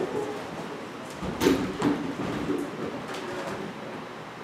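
Chairs being moved and set down on a wooden stage, with a few short knocks and scuffs about a second and a half in.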